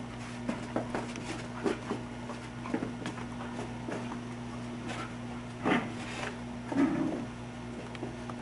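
Dog playing with a golf ball on carpet: scattered soft knocks and scuffs of paws and ball, with two louder bursts about six and seven seconds in. A steady low electrical hum runs underneath.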